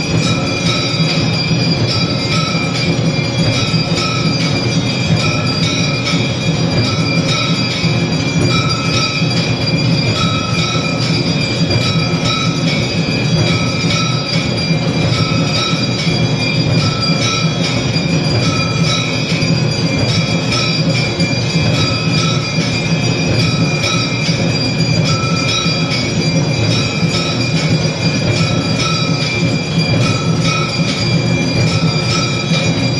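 Temple bells and drums sounding continuously for the aarti: a dense, loud metallic clangour with steady ringing tones over it and a short tone that repeats about once a second.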